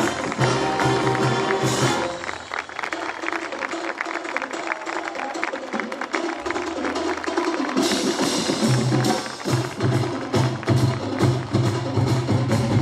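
Municipal marching band (fanfarra) of brass and percussion playing with a steady beat. About two seconds in the low brass drops away, leaving mostly quick, light percussion clicks, and the full band comes back in around eight seconds.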